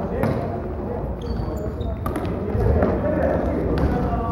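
Floorball play on a wooden sports-hall floor: sharp clacks of sticks and ball, a few short high shoe squeaks, and players calling out, echoing in the large hall.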